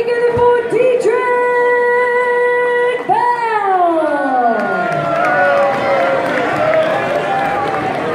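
A woman ring announcer's voice over the arena PA, calling out a boxer's name in a long drawn-out held note that then slides down in pitch, with crowd noise underneath.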